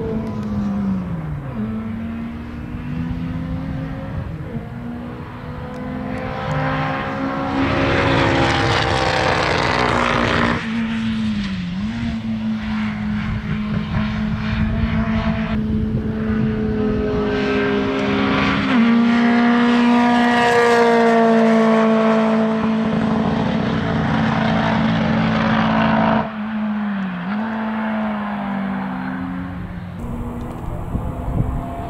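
Škoda 130 LR racing car's four-cylinder engine running hard around the circuit, swelling louder and fading as it passes. The engine note drops briefly and picks up again twice, about twelve seconds in and near the end, as the revs fall and climb again.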